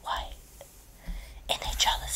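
Whispered speech reading a story aloud: a word trails off, there is a short pause, and the whispering starts again near the end.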